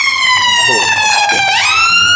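Emergency vehicle siren wailing: a loud tone slides slowly downward, then swoops quickly back up about one and a half seconds in.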